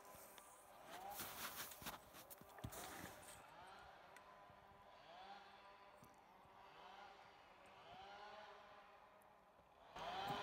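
Near silence: faint crunching and rustling of a person moving about one to three seconds in, under a faint tone that rises and falls about once a second.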